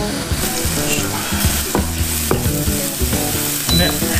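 Minced garlic, ginger and dried red chilli sizzling gently in sesame oil in a frying pan over low heat, with a wooden spatula scraping and knocking against the pan as they are stirred.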